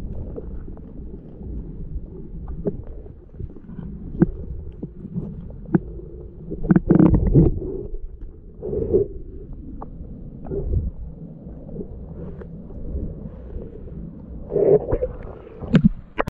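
Muffled low rumbling with scattered knocks, and a few louder thuds about seven, nine and fifteen seconds in. Only the low range comes through, as when a microphone is covered or under water.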